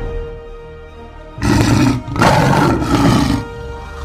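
Two big-cat roars, a short one followed by a longer one, over background music.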